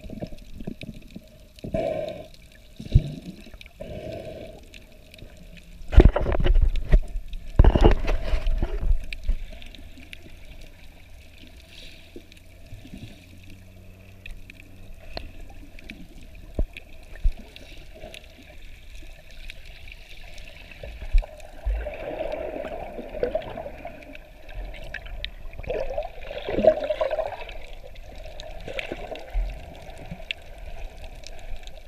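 Water sloshing around a camera held underwater while snorkeling, with two loud surges of churning water about six and eight seconds in, and more movement again in the last third.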